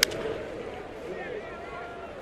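One sharp crack of a wooden bat hitting a baseball, popping it up into a shallow fly ball. A steady murmur of the ballpark crowd runs behind it.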